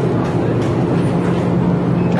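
Steady low electrical hum with a constant rushing noise from a supermarket freezer case's refrigeration and fans.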